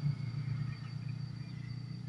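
Low, steady hum of an engine running, with no change in pitch.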